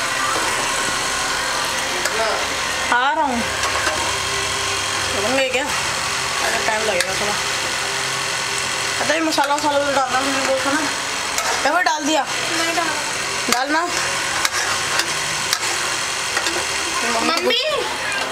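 A voice in short separate phrases or calls, some with wavering pitch, over a steady low hum.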